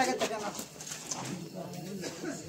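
People talking in the background, with a few sharp taps near the start.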